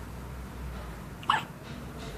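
A newborn baby hiccuping once: a single short, sharp hic a little over a second in.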